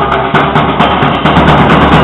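Live street-band music: drums keep a fast, steady beat under sustained pitched melody notes.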